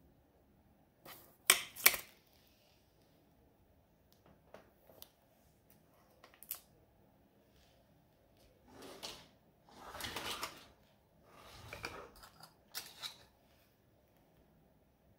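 Craft tools and small hard objects handled on a work table: two sharp clicks about a second and a half in, a few faint ticks, then rattling and rustling from about nine seconds in as a hand rummages through a cup of tools.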